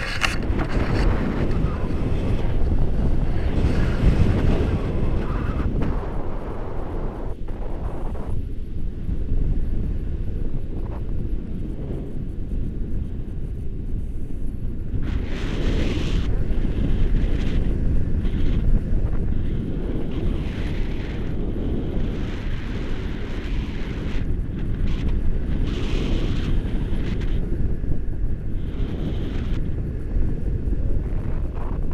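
Airflow buffeting the microphone of a pole-held camera in paraglider flight: a loud, steady rumbling wind noise, with brighter, hissier gusts about halfway through and again near the end.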